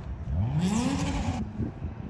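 A single loud, drawn-out shouted call, rising and then falling in pitch, fitting an umpire calling a pitch the batter took.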